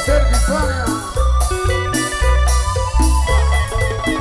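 Live band playing upbeat Latin dance music: a heavy, rhythmic bass line with timbales and güiro percussion, and melody lines gliding over the top.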